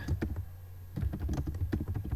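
Computer keyboard typing: a quick run of key presses, a pause of about half a second, then another run of key presses.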